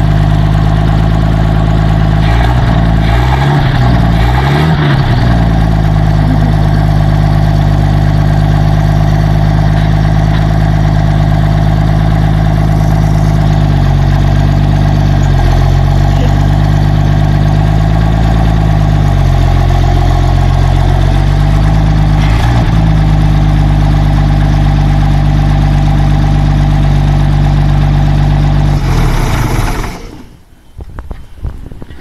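1948 Bedford truck's six-cylinder engine running, its revs dipping and rising a few times. It is running rich, drinking a lot of fuel by the owner's account.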